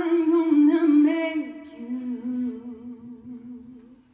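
A woman's unaccompanied voice singing a wordless held note. About a second and a half in it falls to a lower note sung with vibrato, then fades out near the end.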